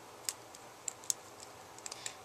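A few faint, sharp clicks of handling as fingers work rubber loom bands along a metal crochet hook, the sharpest about a second in.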